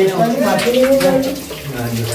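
Men talking in a small, echoing room, over a steady hiss of water running from a tap.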